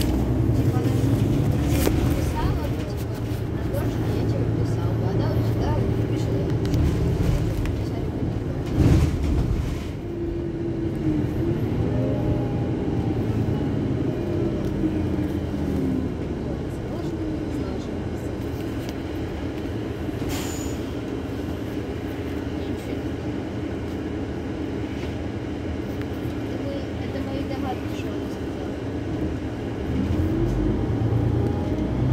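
Iveco Crossway LE Euro 6 city bus standing at a stop with its diesel engine idling steadily, with a brief sharp noise about nine seconds in.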